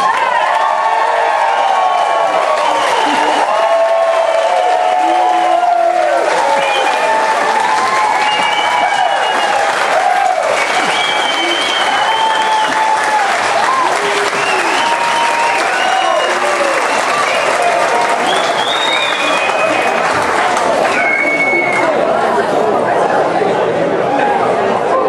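Audience applauding, with many voices cheering and calling out over the clapping.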